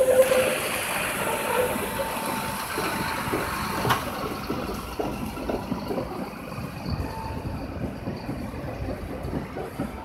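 Steel wheels of a two-car Tatra tram set rolling and squealing in thin steady tones as it takes the curve across the track junction, loudest at the start. There is one sharp clack about four seconds in. In the second half a diesel refuse truck drives past, its engine running.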